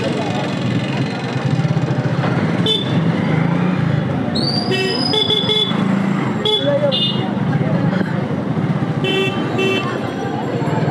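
Street traffic heard from a slow-moving motorcycle, with the engine and traffic rumbling low. Several short horn toots come around the middle and again near the end, over background street voices.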